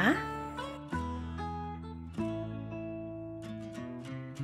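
Background music: acoustic guitar playing plucked chords, each ringing on and fading, with new chords about a second in, just past two seconds, and near the end.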